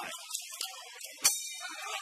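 Background music with one sharp metallic crash, cymbal-like, a little over a second in, its high ringing fading away.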